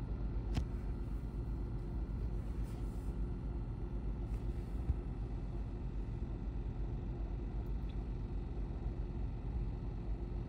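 A car's engine running, heard from inside the cabin as a steady low rumble, with a single sharp click about half a second in.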